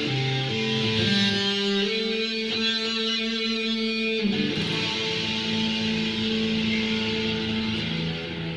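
Electric guitar playing sustained, ringing chords that change every second or two, then one long held chord from about four seconds in.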